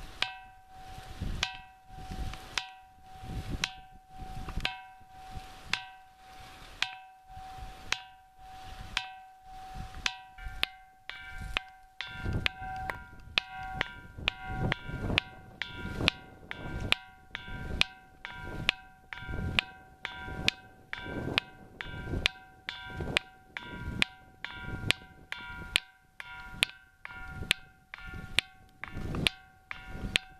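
A ringing rock (a 'piedra campana', bell stone) of limestone struck over and over with a hand-held stone, each knock ringing on with a clear bell-like tone. The knocks come about one and a half a second, quickening to about two a second from about ten seconds in, when a higher ringing pitch joins the lower one.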